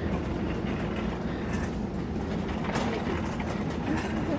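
Steady low rumble with a light rattle, and faint voices near the end.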